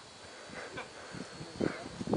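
Faint, scattered human voice sounds from people on the trail, growing a little stronger near the end as laughter begins.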